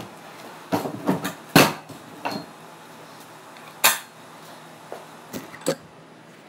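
Kick scooter's metal deck and wheels knocking and clattering on concrete: a string of sharp, uneven hits, the loudest about a second and a half in, then a few scattered knocks.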